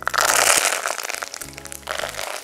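Hot oil in a clay pot bursting into loud sizzling and crackling as green leaves drop in. The burst starts suddenly and eases after about a second and a half. Background music plays underneath.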